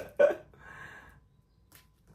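A man's brief wordless vocal sound, a short grunt or 'hm' about a quarter second in, followed by a faint breathy rustle and then near quiet.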